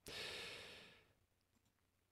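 A single breath from a man close to a studio microphone, lasting a little under a second and fading out, followed by silence.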